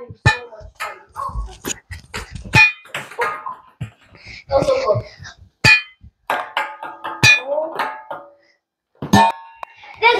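Scattered sharp knocks and clacks, some with a short ring, among brief bursts of children's voices. The sound cuts out for about half a second near the end.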